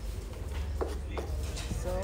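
Grilled tomatoes being mashed with a mug in a pan to make chirmol, with two soft squelching presses about a second in over a low steady rumble.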